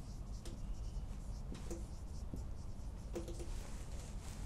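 Marker pen writing on a whiteboard: a series of faint, short strokes.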